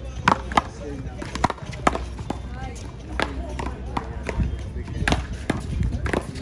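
One-wall paddleball rally: sharp, irregularly spaced cracks of paddles hitting the ball and the ball smacking off the concrete wall, about nine in all.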